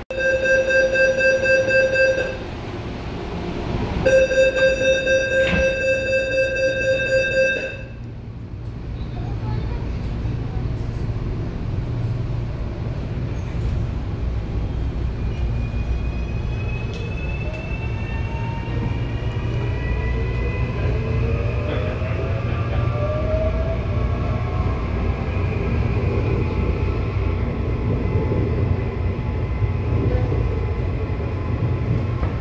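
CPTM series 8500 electric train heard from inside the car: the door-closing warning sounds as two bursts of rapid, loud, high beeping. The train then moves off with a steady low rumble while its traction motors whine, rising in pitch as it accelerates.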